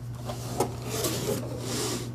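Cardboard box being opened: a small click about half a second in, then the cardboard lid and flaps rubbing and scraping as they are lifted, loudest near the end.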